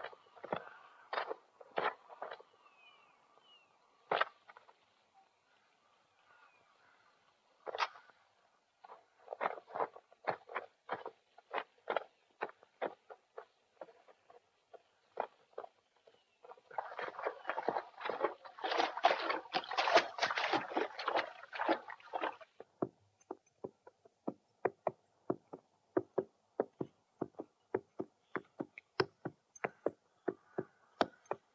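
Footsteps and hoof clops from a film soundtrack: scattered sharp steps, a dense noisy stretch of about five seconds past the middle, then steady clopping at about two to three a second near the end.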